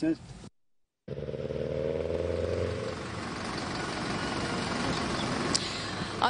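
Street noise with a vehicle engine running: a steady low hum that comes in after a brief silence about a second in and is strongest for the next two seconds, then settles into an even noise. There is a single sharp click near the end.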